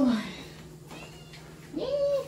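A woman's short exclamation at the start, then a domestic cat meows once near the end, a rising-and-falling call: the cat is begging for fish.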